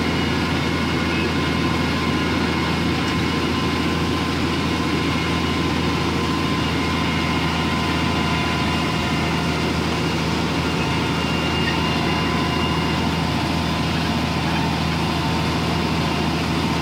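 Valtra tractor's diesel engine running steadily under load as it pulls a no-till planter, a constant low drone at an even pitch.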